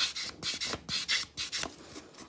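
Nail buffer block rubbed back and forth over the edge of a sculpted acrygel nail, sanding it smooth: short scratchy strokes, about three or four a second.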